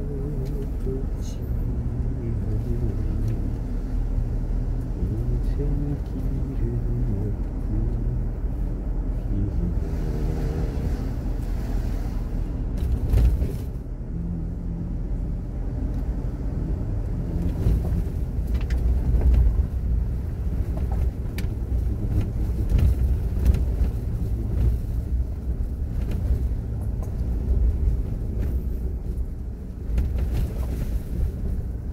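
Car driving slowly along a narrow country lane, heard from inside: a steady low engine and road rumble with occasional knocks and bumps from the uneven surface.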